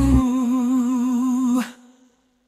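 A synthesized singing voice holds one long note with steady vibrato in an AI-generated pop song. The bass drops out just after the start, and the note cuts off about one and a half seconds in, leaving a brief fading tail.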